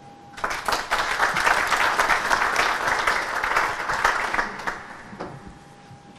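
Audience applauding, starting about half a second in and dying away over the last second or so.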